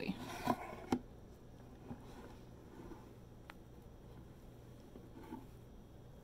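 Camera being repositioned by hand: a few faint handling knocks and rustles in the first second, then quiet room tone with a single sharp click about halfway through.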